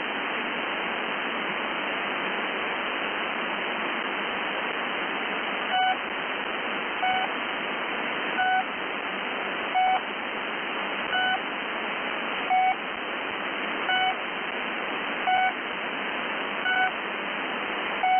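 Shortwave static heard through a single-sideband receiver, then, about six seconds in, the Pip's channel marker starts: short beeps repeating roughly every second and a half over the hiss.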